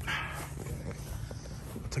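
Footsteps walking across a grass lawn, with faint clicks from carried tools, over a steady low rumble.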